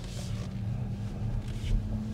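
Cabin noise of an XPeng G6 electric SUV driving slowly: tyre and road rumble with a steady low hum that steps slightly higher near the end.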